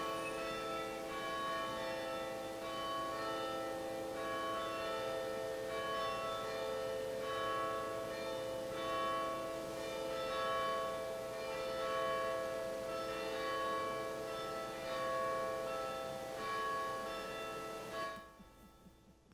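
Church bells ringing, a fresh stroke about every second and a half, each ringing on and overlapping the next.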